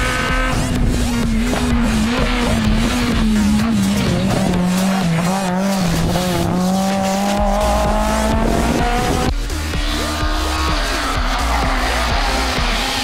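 Rally car engine coming off the throttle for a tight hairpin, its note falling, then climbing again as the car accelerates out of the bend. About three-quarters of the way in, a second rally car's engine takes over as it approaches.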